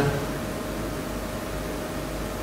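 Steady hiss of background noise with a faint steady hum underneath: the room tone and recording hiss of the church's sound.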